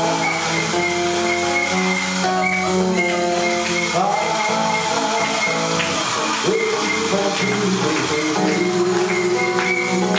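Live samba music played on acoustic guitar, with held melody notes over a steady rhythm. A voice says "thank you" near the end.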